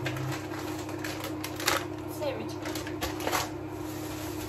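Grocery packaging being handled and unpacked: rustling and crinkling of packets, with a few sharper crinkles about one and a half and three and a half seconds in, over a steady low hum.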